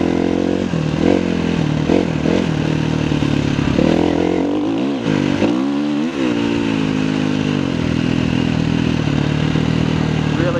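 KTM 350 EXC-F dirt bike's single-cylinder four-stroke engine running under way, with short dips in revs in the first few seconds, a drop and climb back up in revs around five to six seconds in, then steady revs.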